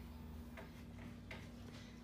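Quiet room tone with a faint steady hum and two faint clicks, about 0.6 s and 1.3 s in.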